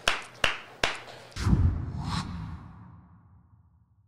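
Three hand claps about 0.4 s apart, then a low whoosh-like transition sound effect that swells and fades away over about two seconds.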